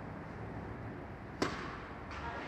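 A tennis racket striking a ball once, a sharp crack about one and a half seconds in, with a short echo from the big indoor hall over a steady background hum.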